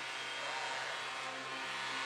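Steady arena crowd noise: a hockey crowd cheering a home-team goal, as an even roar without single claps or shouts standing out.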